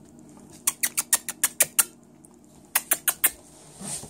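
Quick runs of sharp kissing noises from a person calling puppies: about seven in a row starting just under a second in, then four more after a short pause.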